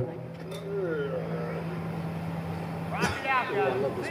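Steady low hum from the stage sound system that cuts off with a click about three seconds in, with voices talking quietly.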